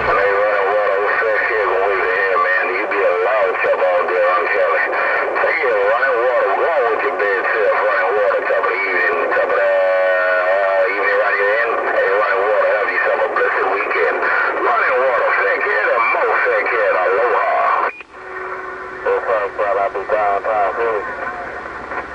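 Distorted, hard-to-follow voices coming through the speaker of an HR2510 radio transceiver over band hiss. A fast warbling trill cuts in about halfway through. Near the end the signal drops out suddenly and a short steady tone is heard before the voices return.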